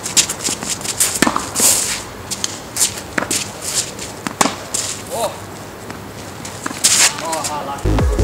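Live tennis rally: sharp racket strikes and ball bounces, with shoes scuffing on the court and a few short voice sounds from the players.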